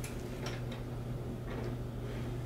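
A few faint, scattered clicks from a TV and its wall mount being handled as the TV is lifted off the mount, over a steady low hum.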